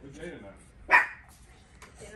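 A dog barks once, sharply, about a second in.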